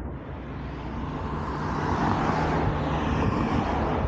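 Road traffic passing close by: a wash of tyre and engine noise that grows louder over the first two seconds and then holds steady over a low hum.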